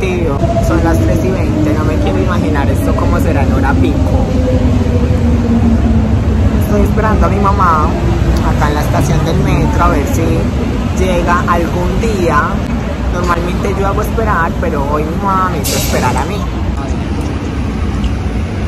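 A woman talking over a steady low rumble. In the first few seconds a whine slowly falls in pitch beneath the talk.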